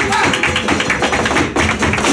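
Flamenco footwork (zapateado): rapid strikes of a dancer's shoes on a wooden stage, with flamenco guitars and hand-clapping (palmas) behind.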